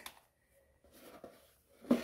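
Faint handling sounds of a cotton dust bag being lifted out of a cardboard box: soft, quiet rustling, with a short louder sound near the end.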